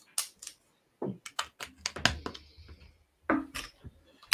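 Small plastic LEGO pieces clicking and clattering as they are handled and pressed together: an irregular run of sharp clicks.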